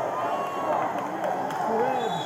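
Several people shouting and calling out at once, overlapping voices of spectators and coaches around a wrestling mat.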